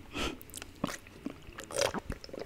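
Close-miked chewing of chewy tteokbokki rice cakes: soft wet mouth clicks and squishes, with a louder noisy burst near the start and another near the end.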